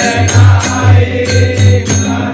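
Men singing a devotional bhajan together, accompanied by a tabla pair whose deep bass strokes fall a little more than twice a second, with bright jingling percussion keeping time on the beat.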